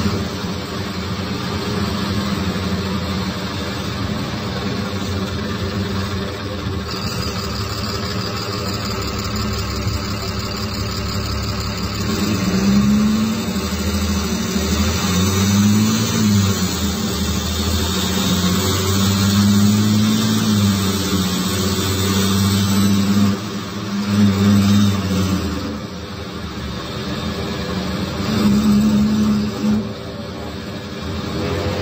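Rear-mounted Cummins ISBe 6.7 six-cylinder turbodiesel of an Agrale MT17.0LE city bus, heard from inside the bus. It runs steadily at first, then from about twelve seconds in its revs climb and drop several times as the bus pulls away and eases off.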